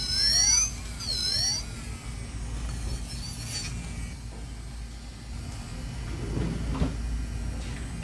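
Electric nail drill whining in two short bursts about a second apart, its pitch sliding as the bit files an acrylic nail.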